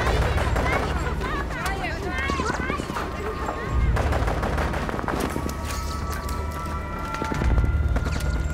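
Rapid automatic gunfire, many shots in quick succession, with heavy low thuds about four seconds in and again near the end.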